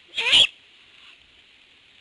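A great horned owl's short, raspy screech, lasting under half a second, near the start, over a steady faint high hiss.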